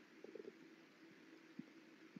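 Near silence: faint room tone, with a few very faint short sounds about a third of a second in and again near the end.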